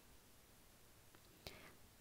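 Near silence: faint room tone, with one brief faint sound about one and a half seconds in.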